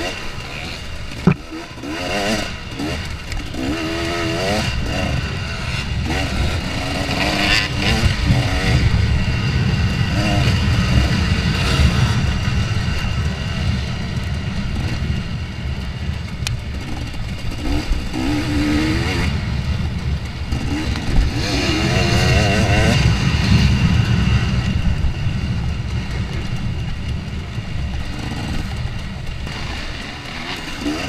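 2014 KTM 250 XC-W two-stroke dirt bike engine under hard riding, its revs repeatedly rising and falling back as the throttle is worked. A sharp knock sounds about a second in.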